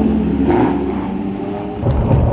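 A supercar's engine running with a steady note that rises slowly and then fades. Near the end it gives way abruptly to a low, continuous rumble of a car driving on the road.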